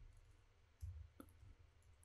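Near silence with a few faint computer keyboard clicks about a second in, as code is typed.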